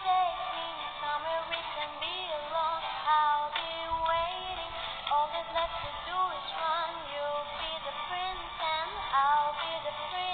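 A young woman singing a melody alone, her voice sliding up and down in pitch through a continuous sung line.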